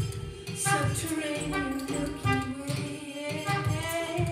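Live electronic music: a steady low beat under a long, gliding melodic line from an electronically processed mutantrumpet and a woman's singing voice.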